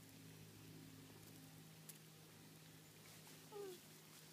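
Near silence over a steady low hum, broken about three and a half seconds in by one brief, faint call that falls in pitch.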